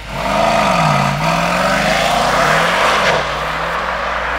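Mercedes-AMG E 63 S's twin-turbo V8 pulling away and accelerating hard down the road, its exhaust note rising and dropping through upshifts before settling as the car draws away.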